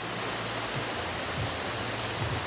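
Shallow stream running over rocks, a steady rush of water.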